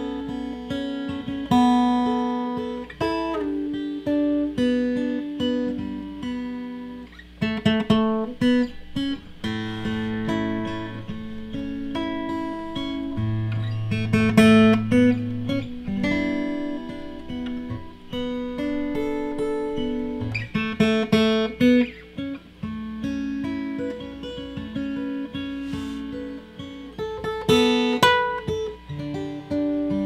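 Taylor 114e acoustic guitar played solo: plucked notes and chords ringing over occasional low bass notes, with a few louder accents.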